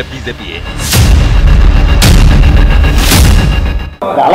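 News-bulletin transition sting: a loud, deep booming bass bed with three sharp swooshing hits about a second apart, cutting off just before the end.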